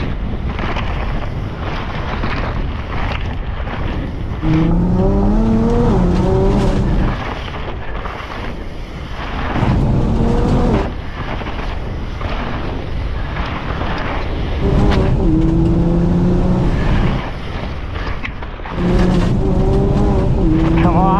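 Nissan GT-R R35 twin-turbo V6 accelerating hard, heard from inside the cabin: four pulls in which the engine note climbs and drops back at each gear change. Between the pulls there is a steady rushing of wind and tyre noise from a mountain bike running fast down a dirt trail.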